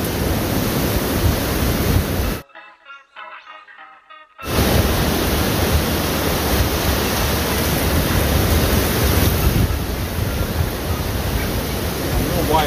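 Steady rush of ocean surf and wind on the microphone at the water's edge. About two and a half seconds in it cuts out for roughly two seconds, leaving only faint music, then resumes.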